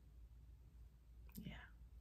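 Near silence: low room hum, with one softly spoken word near the end.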